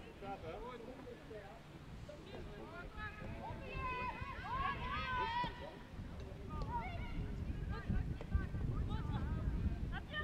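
Players' voices calling out across a football pitch, loudest about four to five and a half seconds in, over a low uneven rumble.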